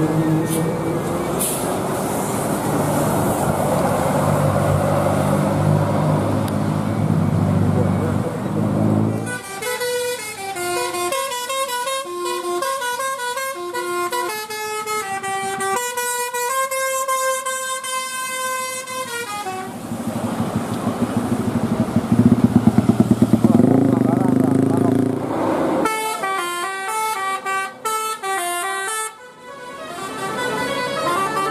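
Heavy tour bus engines running as buses climb past, broken twice by a telolet multi-tone bus horn playing a quick melody of stepped notes: a long run of about ten seconds starting around nine seconds in, and a shorter one a few seconds before the end.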